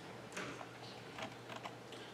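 Quiet room tone with a low steady hum and a few faint, scattered light clicks and rustles.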